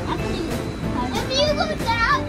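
Young children's high-pitched voices calling out from about a second in, over background music.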